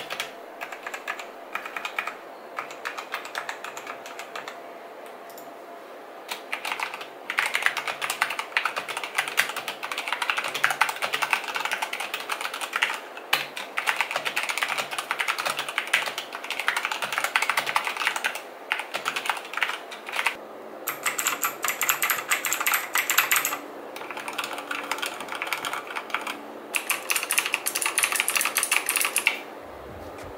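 Fast typing on a mechanical keyboard with Zorro Black linear switches (a Cherry MX clone): a dense, steady clatter of key presses in bursts with short pauses, lighter at the start. There is no click on each press, only the keys bottoming out, with an audible but not loud feedback.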